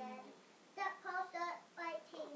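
A high-pitched voice singing or cooing softly in four short notes, starting about a second in.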